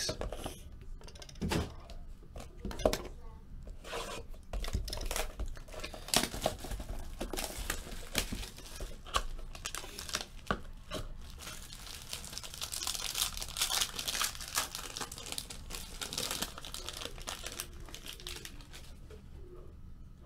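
Hands opening a trading-card box and tearing open the wrapper of the card pack inside: scattered handling clicks at first, then a long stretch of crinkling and tearing that is densest a little past the middle.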